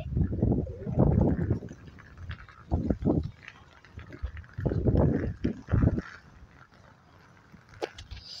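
Irregular gusts of wind rumbling on the microphone: loud low bursts in the first second or so, again around three seconds in and from about four and a half to six seconds, then dying down.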